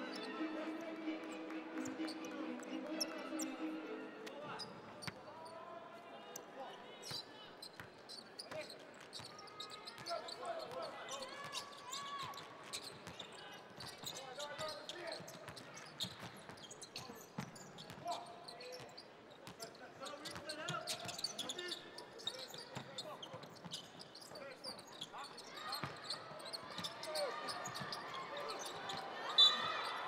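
A basketball game in play in a large hall: a ball bouncing on a hardwood court in a string of short sharp knocks, with scattered players' and spectators' voices. A short stretch of music ends about four seconds in.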